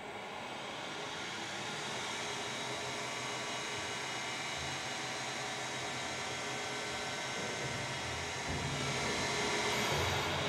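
Overhead crane hoist running as it raises its hook, a steady mechanical whine over a low hum that grows a little louder near the end.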